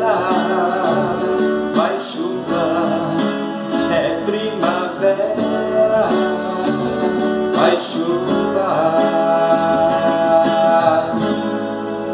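Two nylon-string classical guitars strummed together under a man's singing voice. About eleven seconds in, the strumming stops and a final chord rings out.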